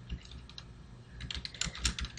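Typing on a computer keyboard: a quick run of keystrokes that starts about a second in.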